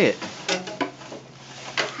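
A few light knocks and clatters, as of something wooden or hollow being handled or bumped, about half a second in and again near the end, under faint room noise.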